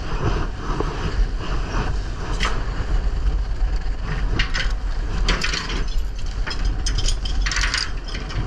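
Danish seine rope being hauled aboard over the rail and through the deck rope guides, with mechanical clicking and rattling from the hauling gear in bursts about 2.5 s in, from about 4 to 6 s, and near the end. A steady low rumble from the boat runs underneath.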